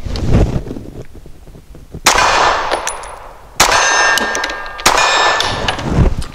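Three shots from an HK P30SK 9mm subcompact pistol firing heavy 165-grain subsonic rounds, spaced about a second and a half apart. Each shot is followed by a steel target ringing.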